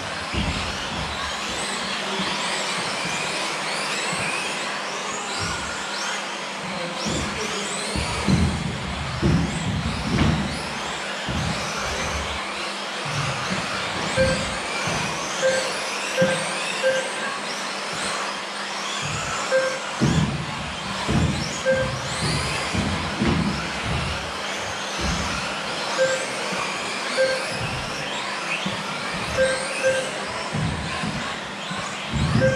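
Several 1/10-scale electric off-road buggies racing on carpet: their motors whine up and down in pitch as they accelerate and slow, with irregular low thumps from the cars landing and hitting the track. From about halfway in, short beeps sound again and again.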